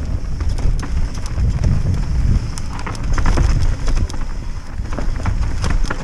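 Mountain bike riding down a rough dirt trail: tyres running over rocks and roots, and the bike rattling with many quick knocks over a steady low rumble.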